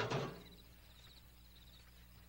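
Metal garbage can lid lifting, with a brief scrape and clunk right at the start, then only a quiet steady hum.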